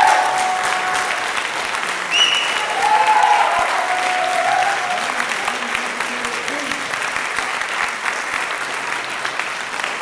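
Audience applauding a solo piano performance, starting as the final piano chord dies away in the first moment.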